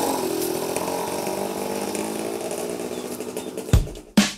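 Small step-through motorcycle engine running as the bike pulls away, its sound slowly fading as it rides off. A drum beat cuts in near the end.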